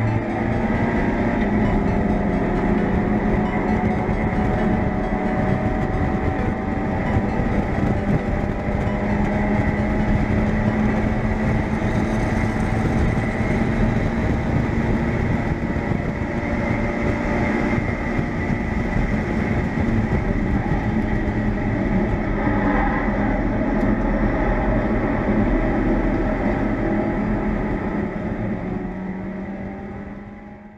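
In-cabin sound of a Mazda MX-5 race car's four-cylinder engine running hard at speed, with wind and road noise. It is a steady drone whose pitch climbs slowly as the car accelerates. It fades out near the end.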